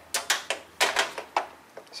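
Irregular clicks and light knocks from ignition test leads and their connectors being handled and hooked on, about seven in the first second and a half, then fading out.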